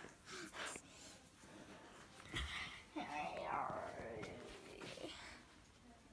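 Faint whispering and breathy voice sounds, strongest in the middle seconds and trailing off near the end.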